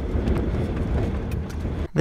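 Steady low rumble of road and wind noise from a vehicle driving on a highway in high winds.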